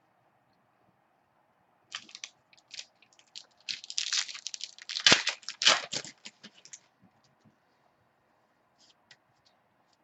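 Crinkling and clicking of trading cards and their foil pack wrapper being handled: a dense flurry of short crackles from about two seconds in to about seven seconds, loudest near the middle, then a few faint ticks.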